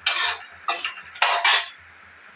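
Kitchen utensils and dishes clattering: four sharp clinks and knocks, the last two coming close together.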